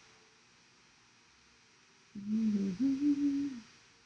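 A woman's closed-mouth hum, a thinking 'hmm', about two seconds in: a lower note gliding slightly down, then a higher held note, lasting about a second and a half. The first half is quiet room tone.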